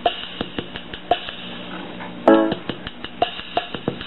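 Built-in rhythm preset of a Suzuki Keyman 49 auto-accompaniment keyboard playing: a steady pattern of electronic drum ticks, with one short, louder accompaniment note a little past halfway.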